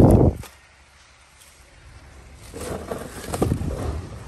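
A loud handling thump right at the start, then, after a short lull, rustling and clatter of a hand moving plastic-wrapped tools about in a fabric tool bag and reaching for a cardboard box.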